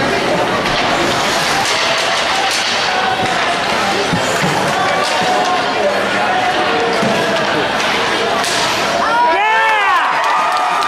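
Ice hockey rink from the stands: crowd chatter with scattered clacks of sticks, puck and boards. Near the end one loud voice shouts, its pitch rising and then falling.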